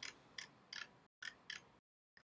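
Five faint, short clicks at uneven intervals, from a computer mouse and keyboard being worked.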